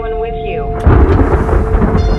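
A trailer sound-design boom: a sudden loud hit about a second in, with a rumbling, hissing tail that dies away slowly, over a held musical drone.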